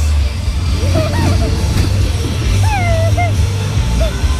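Wind and motion rumble on the microphone of a camera riding a spinning Matterhorn-style fairground ride, with a girl's short high squeals that rise and fall, about a second in and again about three seconds in.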